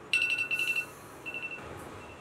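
Electronic alarm beeping: a rapid run of high-pitched beeps lasting most of a second, then a shorter run.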